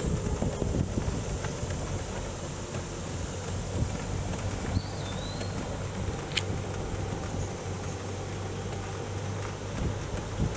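Slow-moving car heard from inside the cabin: a steady low engine and tyre hum. A brief high chirp that rises and falls comes about five seconds in, followed by a single sharp click.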